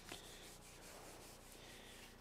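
Faint rubbing of a dry-erase marker on a whiteboard, with little else above room tone.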